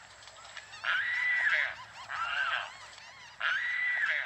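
Water birds calling at a nesting colony: a drawn-out call repeated three times, roughly a second apart, with fainter short chirps between them.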